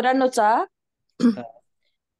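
A woman speaking for about half a second, then after a pause a brief throat-clearing sound; the gaps between are dead silent.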